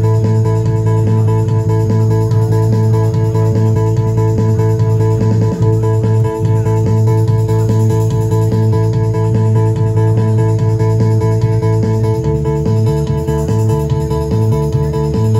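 Instrumental music: an electric bass guitar played over a steady sustained chord. About twelve seconds in, the held low note gives way to quickly alternating low notes.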